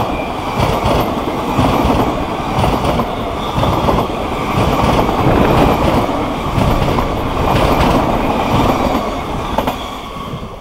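NS VIRM double-deck electric multiple unit passing close by, a loud steady rush of wheels on rail with irregular clatter from the running gear, starting to die away at the very end.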